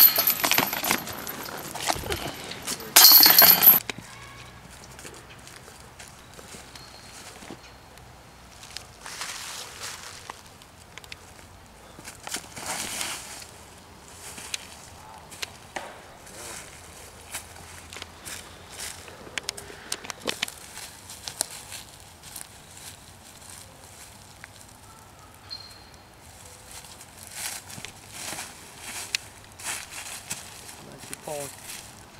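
Chains of a disc golf basket clattering twice with a bright metallic jingle, once right at the start and again about three seconds in. After that there are only faint scattered rustles.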